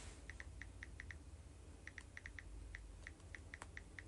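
Faint, irregular light clicks of fingers tapping on a smartphone screen, in two quick runs with a short pause a little past one second in.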